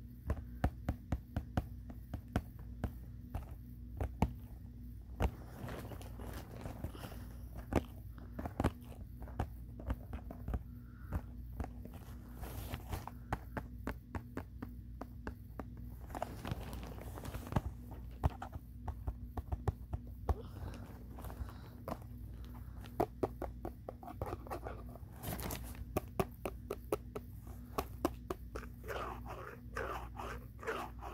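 Fingers tapping and scratching a cardboard box of adhesive bandages: many sharp taps, often in quick runs, with a few longer scraping stretches.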